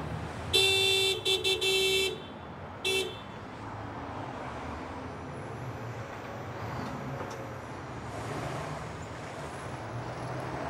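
Car horn honking in a quick series: one long blast about half a second in, then a few short toots and a longer one, and one more short toot about three seconds in. A steady low vehicle rumble runs underneath and on after the honks.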